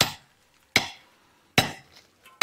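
A steel laterite-cutting axe chopping into a laterite block: three sharp blows, about one every three-quarters of a second.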